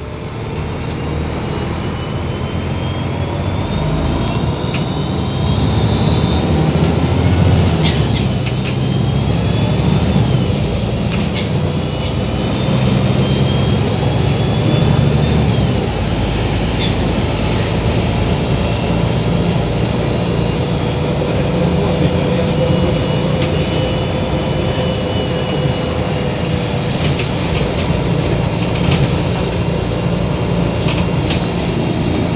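Interior of a Volvo 7700 city bus on the move: the diesel engine and drivetrain run steadily, heard through the cabin, with a faint whine that rises in pitch several times as the bus gathers speed.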